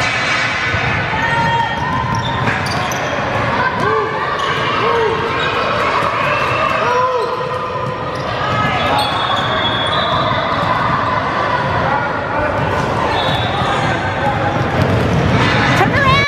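A basketball bouncing on a hardwood gym floor, with short sneaker squeaks from players running. Under it runs a steady chatter of voices, echoing in the large hall.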